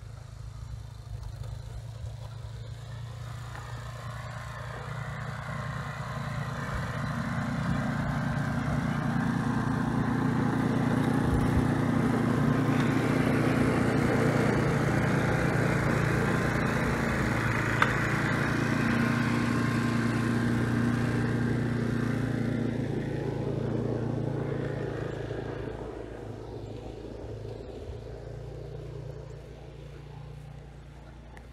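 An engine running, with a low steady hum and a hiss above it, growing louder over the first half, loudest around the middle, then fading after about 24 seconds, as it passes by.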